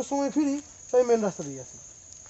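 Men's voices talking in two short bursts, over a steady high-pitched drone of insects.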